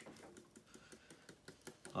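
Ground shellac flakes pattering into a glass jar as they are tapped out of a coffee grinder's cup, a run of faint, irregular small ticks.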